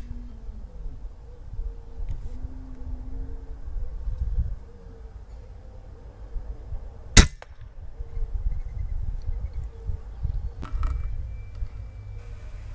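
A single sharp shot from a .25-calibre Umarex Gauntlet PCP air rifle about seven seconds in, over a steady low rumble.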